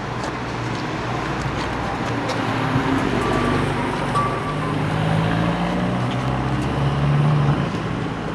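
A motor vehicle's engine running close by over street traffic noise, its low hum getting a little stronger in the second half.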